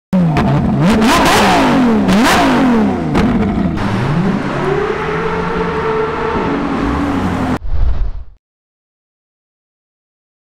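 Ferrari LaFerrari V12 through a valveless exhaust, revved in two quick blips, then accelerating with a rising note that levels off into a steady drone. The engine sound stops abruptly a little after eight seconds in.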